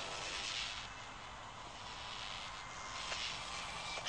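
Steady, fairly quiet rushing hiss with a low hum underneath: a sci-fi energy-field sound effect from an animated film.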